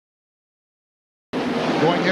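Dead silence for about the first second, then race broadcast sound cuts in suddenly: NASCAR Cup stock cars' V8 engines running at speed as a steady drone, with a commentator's voice over it.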